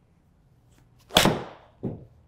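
Titleist T100S iron striking a golf ball off a hitting mat: one sharp crack a little over a second in that fades within about half a second, followed by a softer thud just before two seconds in.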